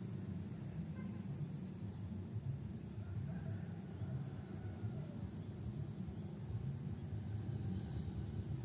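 Steady low rumbling background noise with a fluttering level.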